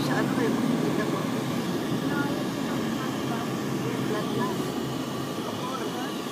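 Steady road and engine noise inside a moving vehicle, with indistinct voices underneath.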